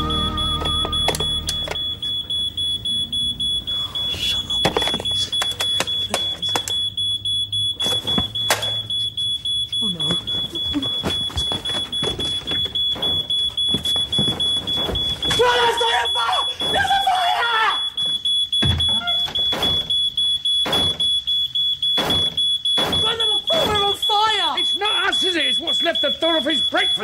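Smoke alarm sounding a steady high-pitched tone, set off by sausages burning under a grill. Knocks and raised voices come over it about halfway through and near the end.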